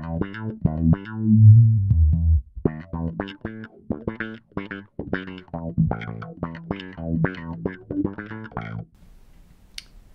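Fender Mustang PJ bass played through a DOD FX25 envelope filter with the sensitivity maxed out: a line of quick plucked notes with a held low note near the start, in a really thin, trebly, scooped tone. The playing stops about nine seconds in.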